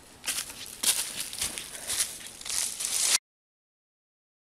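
Irregular rustling and crunching in dry leaf litter and twigs close to the microphone, which cuts off abruptly about three seconds in.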